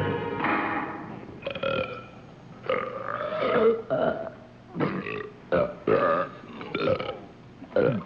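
Several people belching loudly one after another, about nine belches of varying length and pitch, some short and some long and drawn out. A music cue fades out in the first second.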